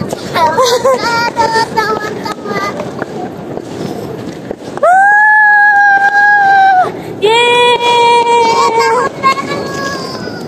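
New Year's toy trumpets blown in long, steady, blaring blasts. A loud one of about two seconds comes about five seconds in, then a lower-pitched one of nearly two seconds. Crowd voices waver and cheer in the first few seconds.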